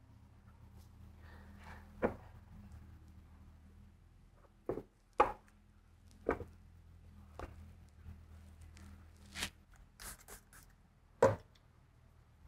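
Light knocks and clicks of a new LS3 oil pump being reassembled by hand on a wooden workbench: its gears and metal cover going back on and the pump being set down. There are about eight separate knocks, the sharpest about five seconds in and near the end, over a faint steady hum.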